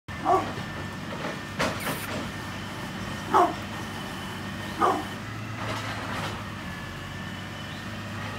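Brindle pit bull barking: three single, short barks spread out at intervals of one to three seconds. There is a sharp click about a second and a half in, and a steady low hum underneath.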